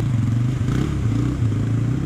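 Dirt bike engine running at low, fairly steady revs, its pitch wavering slightly.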